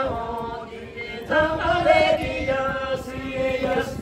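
A group of men and women singing a Lachung folk dance song together in unison, in phrases, with a short pause about a second in before the next line.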